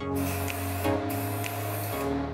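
Aerosol spray paint hissing in two long bursts, with a short break about a second in, over background music.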